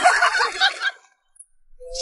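Hearty human laughter for about the first second, in rapid broken bursts. It stops abruptly, and after a short silence a singing voice with music starts near the end.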